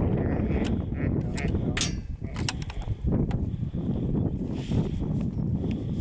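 Wind buffeting the microphone over the rumble of a bakkie moving along a bush track, with a few sharp clicks and knocks in the first half.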